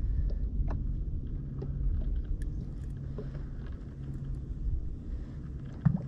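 Bow-mounted electric trolling motor humming steadily on spot-lock, holding the boat against the current, dropping out briefly about halfway through. A low rumble runs underneath, with a few faint clicks.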